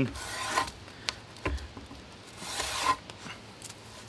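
Drawknife blade scraping bark off a tulip poplar pole in two strokes, one at the start and one about two and a half seconds in, with a light knock between them.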